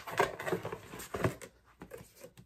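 Rustling and light knocks of items being handled and picked up, dense for the first second and a half, then tailing off into a few faint clicks.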